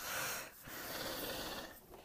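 A person breathing close to the microphone: two long breaths with a short break about half a second in.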